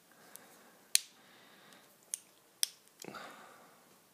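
A thin screwdriver clicking against the small metal parts of an S.T. Dupont Maxijet jet lighter, four sharp clicks spread over a few seconds, the loudest about a second in, then a brief softer rasp about three seconds in. The screwdriver is the wrong size for the screw.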